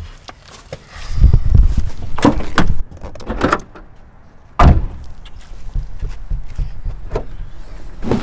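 Loud handling knocks and rumbling, then a car door shutting with one sharp thump about halfway through, followed by quieter rustling of gear being rummaged through in the car.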